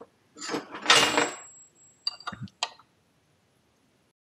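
Metal tools being handled at the bench: a rustling clatter about a second in, then a few sharp metallic clinks as a spanner is set on the ignition rotor's nut. The sound stops abruptly after about three seconds.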